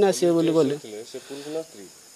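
A man speaking, his voice trailing off after about a second into quieter, broken phrases, over a faint steady hiss.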